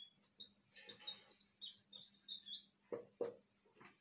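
Marker squeaking against a whiteboard as words are written: a run of short, faint, high squeaks, one per pen stroke, with a couple of sharper taps about three seconds in.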